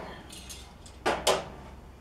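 Metal barbecue tongs set down on the grill, making two quick clatters about a second in, with lighter knocks of handling before them.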